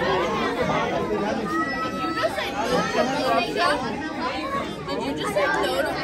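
Many children and adults chattering at once, a steady babble of overlapping voices with no single speaker standing out.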